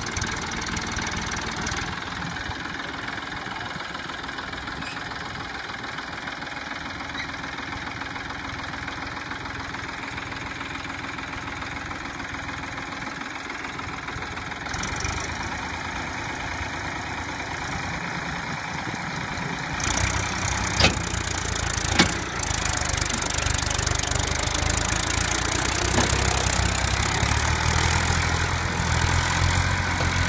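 Massey Ferguson 241 DI tractor's three-cylinder diesel engine running steadily, then, about two-thirds of the way in, working harder and louder with more low rumble as it hauls a heavily loaded trolley out of soft soil. Two sharp knocks come soon after the engine takes the load.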